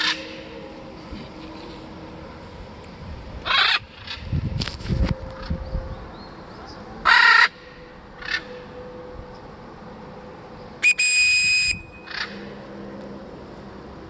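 Blue-and-gold macaw in free flight giving a series of short, loud, harsh squawks spaced a few seconds apart. Around three quarters of the way in, a single steady-pitched whistle lasts just under a second.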